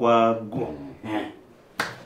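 A man's brief laugh, then a single sharp slap of two palms meeting near the end, as in a hand-slap greeting.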